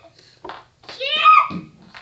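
A child's voice calling out briefly about a second in, preceded by a short click.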